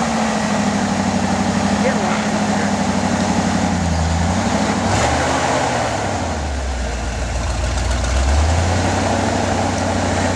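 1979 Ford four-by-four pickup's engine working at low speed as the truck crawls over rocks, the revs holding, dropping about halfway through, then rising again near the end.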